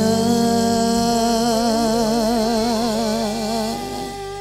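A male singer holds a long sustained note with a wide, even vibrato over a steady band accompaniment. The held note fades out near the end.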